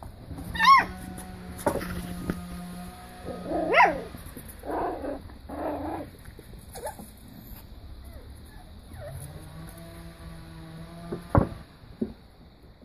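Beagle puppies yelping and whining at play, with high, sharply falling yips about a second in and again near four seconds. A single sharp knock comes near the end.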